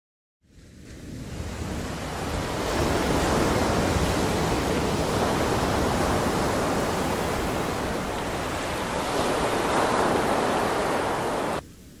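Ocean surf washing on a beach: a steady rushing that fades in over the first couple of seconds and drops away sharply near the end.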